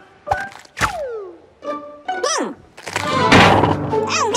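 Cartoon sound effects over background music: a sharp hit with a quick falling whistle about a second in, then a loud heavy thunk near the end as a cartoon anchor lands on a character's head.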